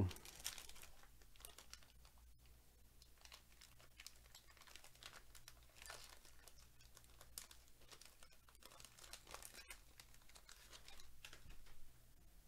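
Wrapper of a Topps Series 1 jumbo baseball card pack being torn open and crinkled by hand: faint, scattered crinkling and tearing, a few scraps louder than the rest.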